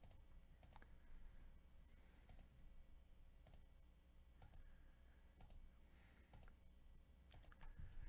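Faint computer mouse clicks, single sharp clicks repeated irregularly about every half second to a second, over a low steady hum.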